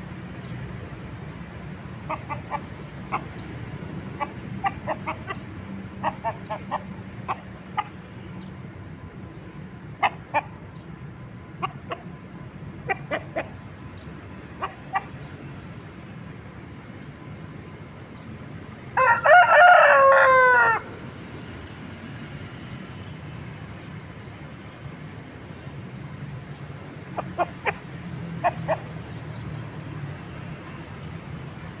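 A Bangkok gamecock rooster clucking in short scattered groups, then crowing once, loudly, for about two seconds about two-thirds of the way in, the crow falling in pitch at its end. A few more clucks follow near the end.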